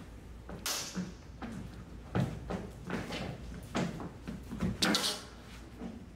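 Lightsaber blades clacking against each other in a fast, irregular exchange: about ten sharp knocks over a few seconds, with two brief hissing swishes among them.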